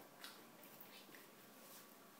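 Near silence: room tone with a few faint soft ticks or rustles.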